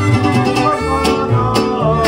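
Live mariachi band playing: a violin melody over strummed guitars and deep plucked bass notes.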